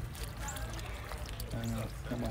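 Water steadily pouring and trickling into a garden fish pond, with faint voices near the end.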